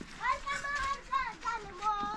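A high-pitched voice calling out in several short phrases.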